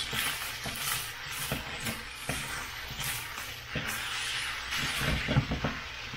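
Fried rice sizzling in a stainless steel skillet while a utensil stirs it, scraping irregularly against the bottom of the pan.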